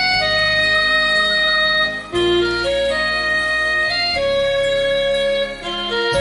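Yamaha PSR-E263 electronic keyboard playing a slow melody of a few long held notes, with low sustained bass notes beneath that change along with the melody.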